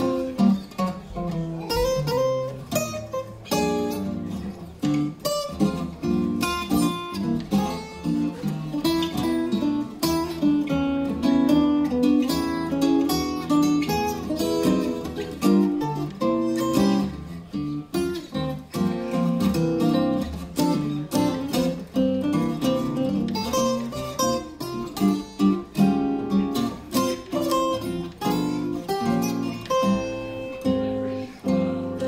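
Two Ken Parker archtop guitars played together as a duet, a continuous stream of plucked single notes and chords.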